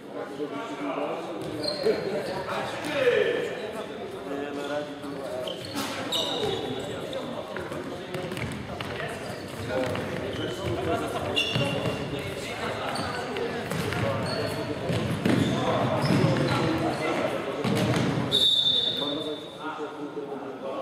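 Futsal game in a large sports hall: the ball thudding on the wooden floor, players calling out and footsteps, all with a hall echo. Several short high squeaks, typical of shoes on hardwood, come through at intervals.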